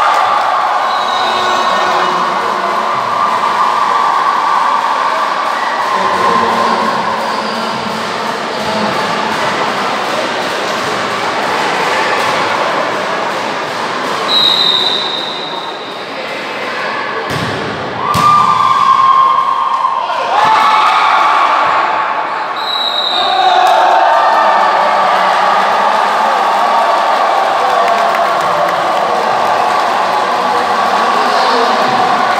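Noise of a hall crowd during an indoor volleyball match, continuous and loud, with the thuds of ball strikes, a cluster of sharp impacts past the middle, and two short high whistle-like tones.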